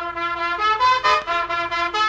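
Salsa horn section led by trumpets, coming in suddenly and playing a quick line of short notes in harmony.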